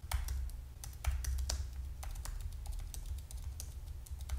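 Typing on a computer keyboard: a quick, irregular run of key clicks, over a low steady hum.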